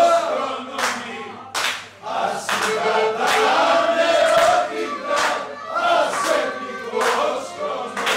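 A man sings a Pontic Greek muhabbet (table song) through a microphone in long held notes, with other voices in the room joining in.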